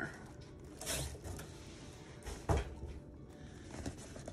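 Cardboard boxes being shifted about and handled on a tabletop: light rustling with a few dull knocks, the loudest about two and a half seconds in.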